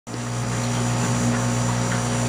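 Steady low electrical hum with an even hiss above it.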